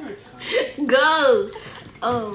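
A girl laughing: a short breathy gasp, then one drawn-out voiced laugh note that rises and falls in pitch.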